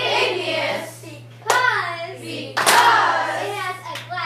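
Many children's voices talking over one another in a classroom, none clear enough to follow. Two sharp, loud sounds cut in at about a second and a half and just under three seconds, over a steady low hum.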